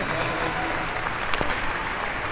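Large audience applauding, a dense steady patter of many hands with voices mixed in, and one sharp click a little past halfway.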